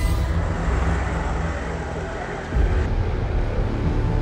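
A car running along the road close by, a steady rumble of engine and tyres that suddenly gets louder a little over halfway through.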